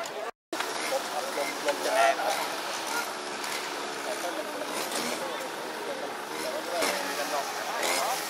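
Several people talking at once outdoors, indistinct overlapping chatter. The sound drops out completely for a moment about half a second in.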